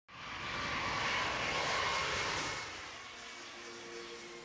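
Jet airliner engines running: a rushing roar with a steady whine over it, loud at first and fading away after about two and a half seconds.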